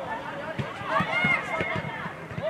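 Several voices shouting and calling over one another on a football pitch, with short thuds of running footsteps.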